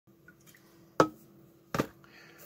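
Two sharp knocks about three-quarters of a second apart as an aluminium beer can and a cardboard box are set down on a cutting mat, over a faint steady hum.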